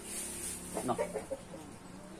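A chicken clucking, a quick run of short clucks about a second in.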